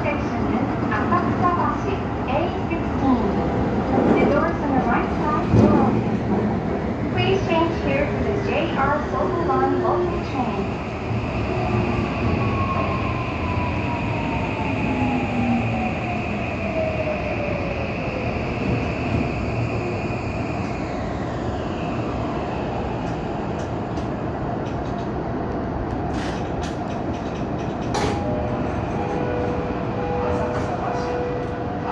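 Toei 5500-series subway train running through a tunnel and braking into a station, heard from the cab. Uneven running noise with short wheel squeals comes first, then a steady whine and a falling tone as the train slows to a stop.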